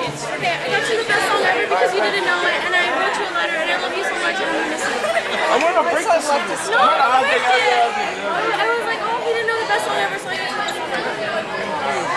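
Several young people talking over one another in a lively hubbub of chatter, with no single voice standing out.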